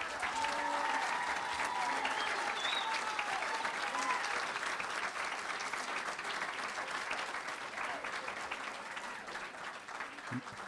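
Audience applauding, a dense patter of many hands that slowly dies down over about ten seconds.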